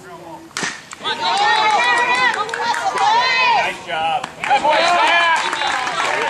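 A bat hits a pitched baseball with one sharp crack about half a second in, followed by spectators yelling and cheering loudly.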